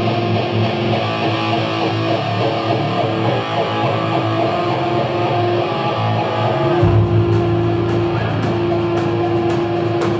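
A live rock band plays an electric guitar riff with held notes. About seven seconds in, the bass and drums come in heavily, with cymbal hits.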